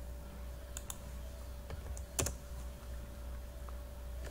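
A few separate keystrokes on a computer keyboard, the loudest about two seconds in, over a faint steady hum.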